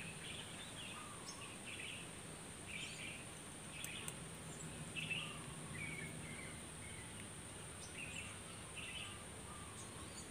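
Faint outdoor ambience: small birds chirping at irregular intervals of about a second, over a steady high-pitched whine. There are two light clicks about four seconds in.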